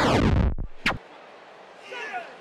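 Edited transition sound effect for a countdown title card: a scratchy, bass-heavy whoosh sweeping downward in pitch, ending in one sharp hit just under a second in.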